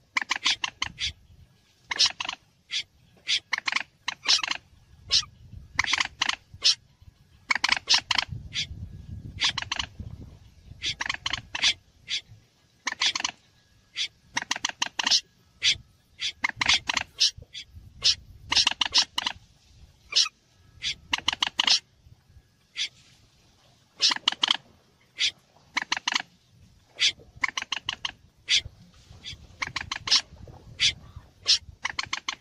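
A bird-trapping lure recording of mixed moorhen (mandar) and snipe (berkik) calls: quick clusters of short, sharp calls repeated over and over with brief pauses between them.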